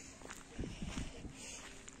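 Footsteps on an unpaved dirt road, a few soft steps about half a second to a second in, over faint outdoor background noise.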